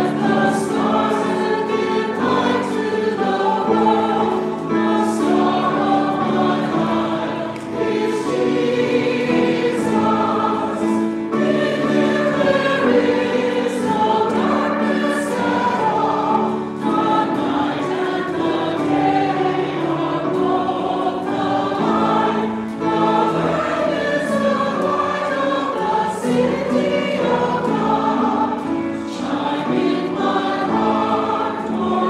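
A congregation singing a hymn together, held notes moving from one to the next at a steady pace.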